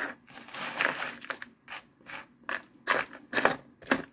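Rummaging through a box of jewelry: irregular rustling and crinkling, with short, sharp scrapes and clicks, the loudest ones near the end.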